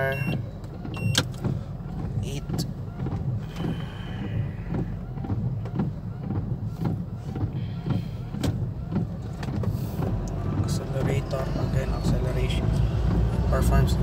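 Reverse parking sensor of a 2010 Mitsubishi Montero Sport beeping a steady high tone at the start and once more briefly about a second in, while the SUV is in reverse. After that comes the vehicle's engine and cabin noise, which grows louder in the last few seconds as the car pulls away.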